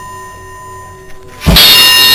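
A cymbal's ring fades away, then about a second and a half in a cymbal is struck hard and rings on loudly.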